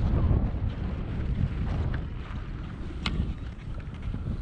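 Wind buffeting the microphone while skiing downhill, a gusty low rumble over the hiss of skis running through tracked snow. A single sharp click comes about three seconds in.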